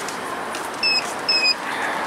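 Steady outdoor background noise, with two short high-pitched beeps about a second in, half a second apart.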